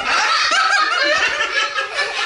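People laughing together, a woman and a young girl among them, without a break.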